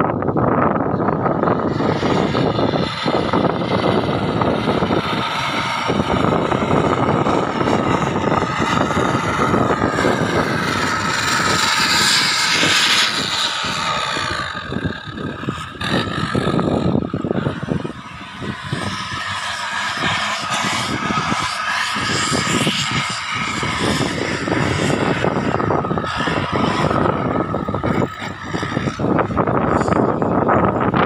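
Engines of off-road 4x4 vehicles running and revving as they climb over a dirt mound. The sound is loud and dense, easing off briefly a few times.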